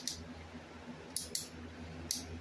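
Two quick, sharp plastic clicks about a second in from a black handheld shower head as it is turned and handled, over a faint low hum.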